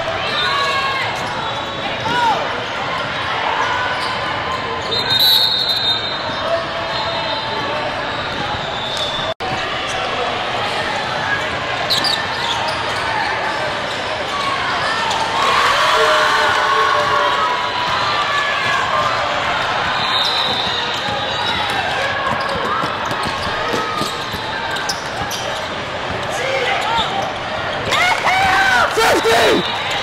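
Basketball dribbled on a hardwood court amid shouting voices and crowd chatter, all echoing in a large hall.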